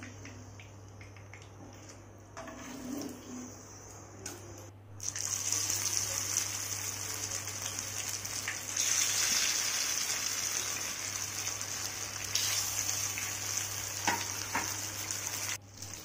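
Masala-coated fish steaks sizzling as they shallow-fry in hot oil in a nonstick pan. The sizzle is fainter at first and grows much louder and steady about five seconds in.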